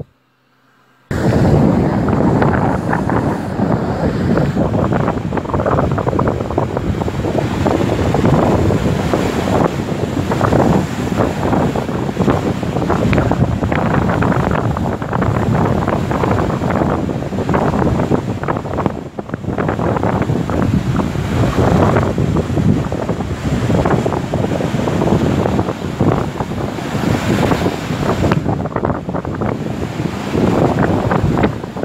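Sea waves breaking on a sandy shore, with strong wind buffeting the microphone. The sound cuts in suddenly about a second in, after a brief silence.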